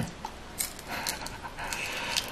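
A man eating barbecue skewers close to the microphone, breathing audibly between bites, with a few short hissing breaths.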